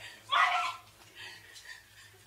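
A woman's short, loud vocal outbursts, the loudest about a third of a second in, with fainter ones after.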